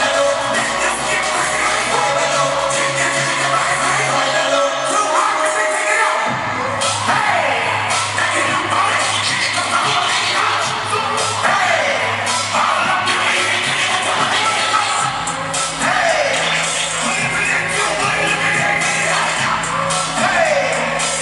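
Loud live music with vocals and a heavy bass beat, played over a concert sound system and heard from the audience. The bass briefly drops out about six seconds in before the beat comes back, and the bass pattern shifts again about fifteen seconds in.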